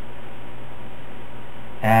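Steady background hiss with a low, even hum and no other events; a man's voice starts right at the end.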